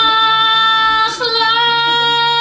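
A woman singing long held high notes, with a short break about a second in before the next held note, over a low steady accompanying tone.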